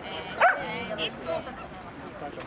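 A dog gives one sharp, high yip about half a second in, followed by a few fainter yips.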